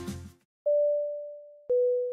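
Background music dies away, then an electronic two-note chime sounds: two pure tones, the second a little lower than the first, each starting sharply and fading over about a second.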